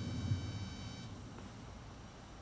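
A high, steady electronic beep with several even overtones that cuts off abruptly about a second in, leaving faint room noise.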